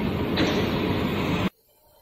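Steady mechanical running noise from the plasma cutting machine and its compressed-air supply, which stops abruptly about one and a half seconds in.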